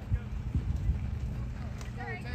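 Faint voices of players and spectators calling out across a ballfield, over a low, irregular rumble with soft thumps.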